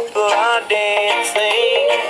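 A rocksteady record playing: a sung vocal line with sliding notes over the band's backing.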